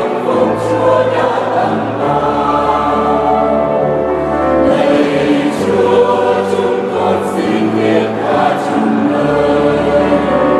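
Mixed choir singing a Vietnamese Catholic hymn in harmony, over held low bass notes that change every second or two.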